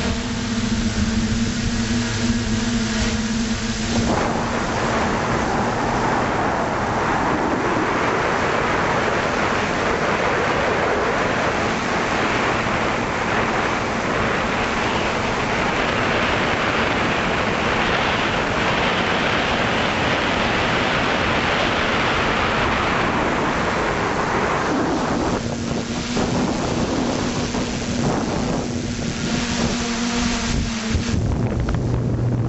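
FPV drone's electric motors and propellers humming at a steady pitch, picked up by the onboard camera. From about four seconds in until near the end, a heavy rush of wind on the microphone covers the hum, which comes back clearly for the last few seconds.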